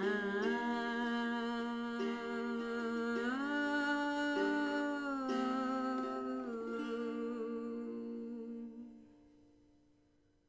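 A woman humming a slow, wordless melody in long held notes, over a small-bodied acoustic guitar picked gently. The song fades out near the end.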